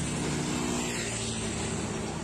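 Motorcycles passing on a road: a steady engine hum whose pitch sags slightly as they go by, fading near the end.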